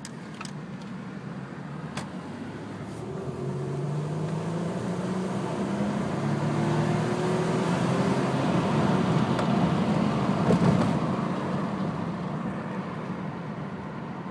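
Stock 2003 Toyota Camry engine, heard inside the cabin, revving up under full acceleration. Its pitch and loudness climb steadily toward about 6,000 rpm, then the revs drop off as the throttle is lifted a few seconds before the end.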